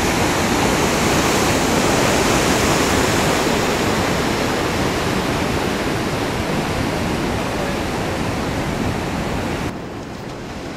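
Steady rush of ocean surf, a loud even hiss of breaking waves and whitewater that drops a little in level near the end.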